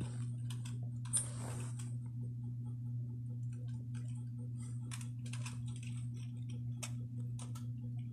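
A steady low hum with scattered, irregular faint clicks and taps; one louder click comes a little after a second in.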